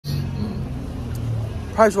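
Street traffic: the low, steady hum of a car engine close by. A man's voice comes in near the end.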